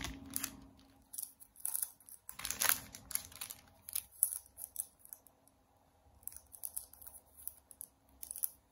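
Bundles of banknotes in clear plastic wrap being handled and turned over: irregular crinkling and rustling of the plastic, with a quieter stretch around the middle.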